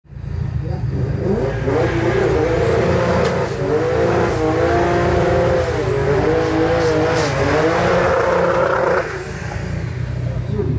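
Turbocharged drag car engine held at high revs for a burnout, its pitch wavering up and down, cutting off abruptly about nine seconds in.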